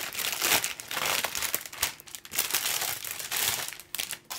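Thin plastic bags crinkling and rustling as a plastic model kit's runners are handled and unwrapped. The crackling is irregular and dies down near the end.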